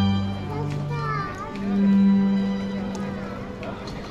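Street string ensemble of violins and cello playing long held low notes that stop shortly before the end, with young children's voices over the music.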